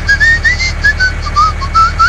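A whistled tune of short sliding notes, climbing, then dipping and climbing again, ending on a long held note near the end, over a steady low rumble.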